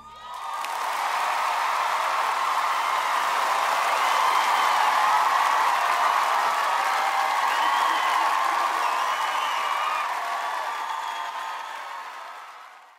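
A studio audience applauding and cheering, with a few high shouts among the clapping. It builds up in the first second and tails off near the end.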